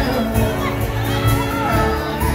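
A live band with guitars, cello and fiddle playing, with the audience cheering and whooping over the music.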